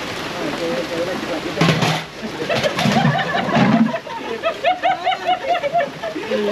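Steady rain hiss on a wet patio, overlaid by men's voices and, in the second half, a run of rhythmic laughter.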